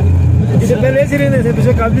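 A jeep's engine running as it drives along a rough dirt mountain track, a steady low rumble with people's voices over it.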